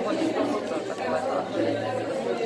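Background chatter: several people talking at once in a large room, their voices overlapping.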